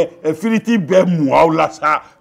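Speech only: a man talking, in quick phrases with short pauses.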